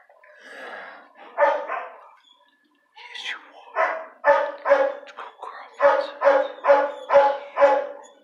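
A dog barking in short, pitched barks: two barks early on, then a steady run of about two a second through the second half.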